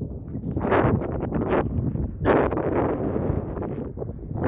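Wind buffeting an outdoor camera microphone: a steady low rumble with a few short, louder gusts about a second in and again past two seconds.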